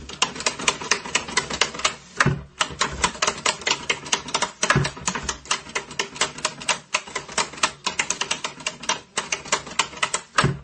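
Toggle switches on a wooden multi-switch 'useless box' clicking rapidly as they are flipped back and forth, several clicks a second, with a couple of duller knocks from the box.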